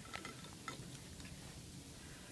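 Quiet room tone with a few faint clicks in the first second as a boiled artichoke is handled over a plate.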